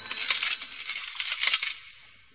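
Coins clattering and jingling: a dense run of quick metallic clinks that thins out and fades near the end.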